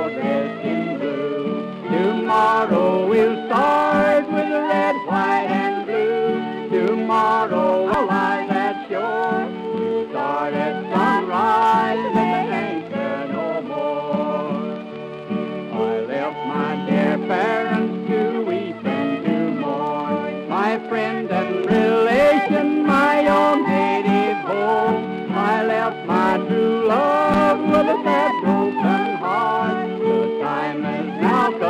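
Old-time Texas-style fiddle playing a quick tune over a steady accompaniment of held chords, with the dull, narrow sound of a 1920s recording.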